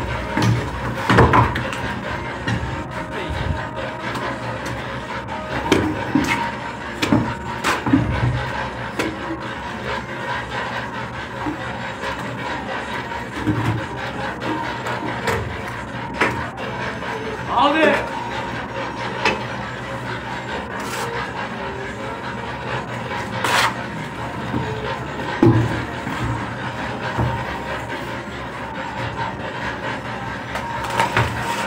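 Steel mason's trowel scraping and rubbing against a rough concrete wall, with scattered sharp taps and knocks as the blade strikes the surface.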